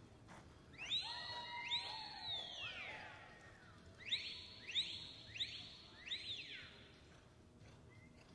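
Sharp whistles from spectators, each rising quickly, holding and falling away: two overlapping whistles about a second in, then four quick ones in a row starting about four seconds in.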